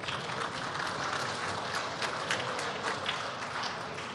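Applause from a large seated audience in a big assembly chamber: a dense patter of many hands with individual sharp claps standing out, easing off slightly near the end.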